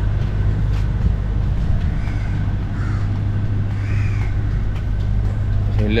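A few crow caws, short arching calls about two, three and four seconds in, over a steady low rumble.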